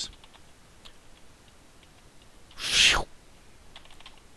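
A single short, breathy exhale blown into a close headset microphone about three seconds in, with a few faint clicks around it.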